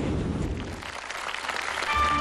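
Studio audience applauding, dying down about halfway through, with instrumental music starting just before the end.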